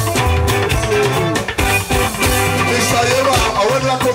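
Live band music: electric guitar and bass over a drum beat, with a man singing into a microphone toward the end.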